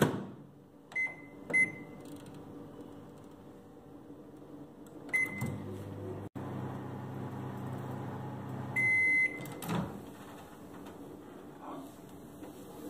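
Samsung countertop microwave oven: the door clicks shut, the keypad beeps twice as it is set, then another beep and the oven runs with a low, steady hum for a few seconds. The run ends with a longer beep, and the door clicks open soon after.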